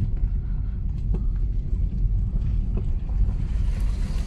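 Low, steady rumble of a car rolling slowly over a gravel road, heard from inside the cabin, with a couple of faint clicks.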